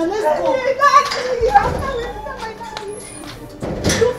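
Women's excited, high-pitched voices calling out and laughing over one another in greeting, fading after about two and a half seconds, with a short burst of noise shortly before the end.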